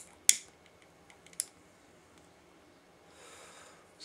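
A cigarette lighter struck to light a cigarette: two sharp clicks in the first half second and a smaller one about a second and a half in, then a soft breathy hiss about three seconds in.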